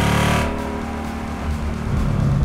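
Whipple-supercharged V8 of a Shelby Terlingua Mustang pulling hard with its note rising, then cutting off sharply about half a second in as the throttle closes. A lower engine note follows as the car slows under braking.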